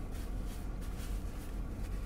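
Steady low rumble and faint hiss of a car cabin's background noise, with no distinct sounds.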